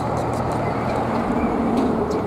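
Steady rumble of passing road traffic, with a few faint high chirps and ticks from Eurasian tree sparrows on top.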